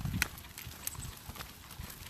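Soft, irregular thumps and clicks of footsteps and a pushchair's wheels rolling over a dirt and grass path, a little louder near the start.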